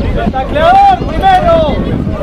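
Men's voices shouting and calling out, loud and high-pitched, over a steady rumble of wind on the microphone.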